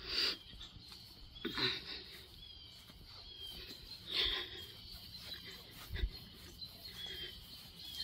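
Quiet outdoor ambience with faint, scattered bird chirps and a few soft brief sounds about a second and a half and four seconds in.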